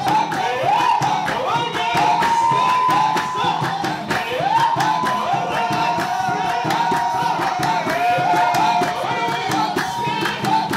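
A men's chorus of a Rakba folk troupe from Zagora sings loud, drawn-out cries that slide up into long high held notes, phrase after phrase, over steady unison hand clapping.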